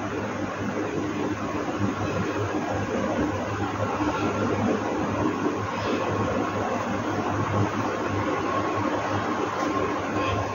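A steady hum with a continuous rushing noise, typical of a mains-powered motor such as a fan, running evenly throughout.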